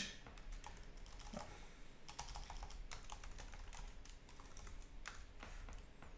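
Faint typing on a computer keyboard: irregular keystroke clicks.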